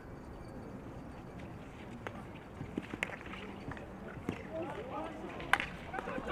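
Field hockey pitch sound: several hard clicks of a stick striking the ball at about two seconds, three seconds, and a sharp loudest one about five and a half seconds in. Players shout over an open-air background.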